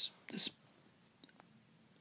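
A softly spoken word near the start, then a few faint ticks about a second in from a stylus tapping and writing on a tablet.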